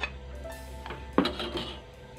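A metal spoon clinking and scraping against a plate and a metal cooking pot as food is pushed into the pot, with one sharper clink a little past a second in. Soft background music plays underneath.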